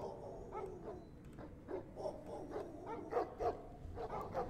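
Hounds barking faintly: a run of short barks.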